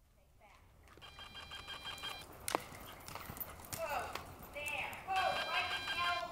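Live sound of an indoor riding arena with a horse cantering on soft footing: faint indistinct voices and a sharp click about two and a half seconds in. The sound fades in over the first second.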